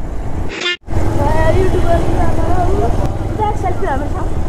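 Motorcycle riding at low speed: a steady low engine-and-wind rumble, with people's voices in the background. A short high-pitched tone sounds about half a second in, then the sound drops out for an instant just before the one-second mark.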